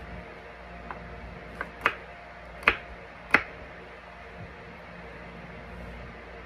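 Kitchen knife chopping through vegetable chunks onto a wooden cutting board: sharp knocks of the blade hitting the board, a couple of faint ones and then three louder ones a little under a second apart in the middle.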